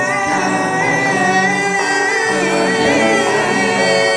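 Male and female voices singing a slow mantra chant together in long held notes that waver gently, over bowed cello.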